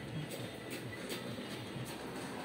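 HP PageWide Pro 477 multifunction printer starting a copy job. It runs with a faint mechanical whir and a few light clicks as it begins scanning the original on the flatbed glass.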